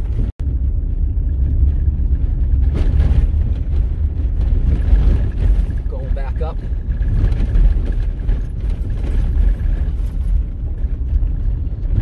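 Vehicle driving slowly over a rough, potholed dirt road: a steady low rumble of tyres and engine. The sound cuts out for an instant just after the start.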